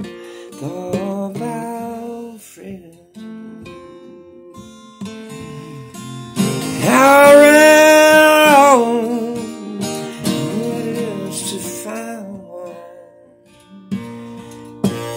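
Acoustic guitar strummed and picked through a slow song. A long held wordless vocal note from about six to nine seconds in is the loudest part.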